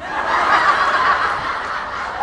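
Theatre audience laughing at a punchline. The laughter swells about half a second in, then slowly tapers off.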